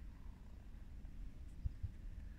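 Quiet, low rumbling noise on a handheld camera's microphone, with two soft thumps near the end.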